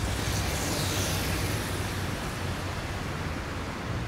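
Steady street ambience: a broad hiss of distant traffic with a low rumble underneath.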